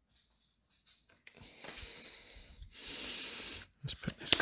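A person breathing close to the microphone: two long, hissing breaths, the second shorter with a slight whistle, after a few faint clicks of card handling.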